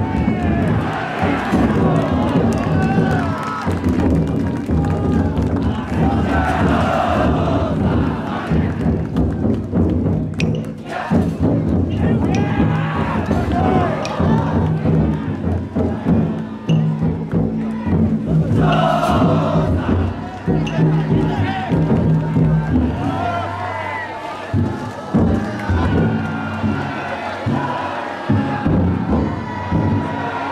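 Massed shouting and chanting of float bearers and a cheering crowd, many voices at once, over the deep beating of the big taiko drums carried inside the festival yatai floats.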